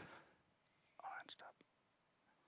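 Near silence, with a faint, brief whispery voice sound about a second in.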